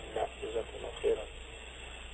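Speech: the last word of a question spoken in Arabic, a few short voiced sounds in the first second, then a brief pause with only faint steady background hum.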